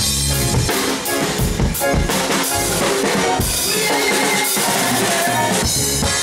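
Live band's drum kit playing a break of kick, snare and rimshot strokes. The bass drops out about half a second in, leaving mainly drums and percussion, and the low end comes back at the very end.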